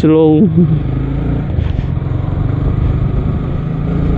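A Yamaha sport motorcycle's engine running steadily at low speed.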